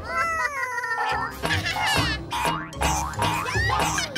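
Cartoon soundtrack: background music with a steady low beat, opened by a single pitched cry that bends up and then sinks over about the first second, followed by short sliding sound effects.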